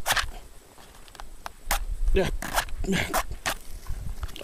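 A wooden match scraped against a matchbox striker again and again, a series of short rasping strikes that fail to light it.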